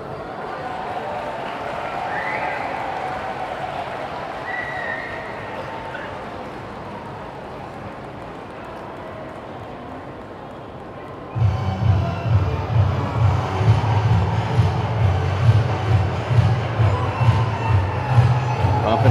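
Festival crowd chatter, then about two-thirds of the way through, loud bon odori festival music starts with a steady, low drum beat.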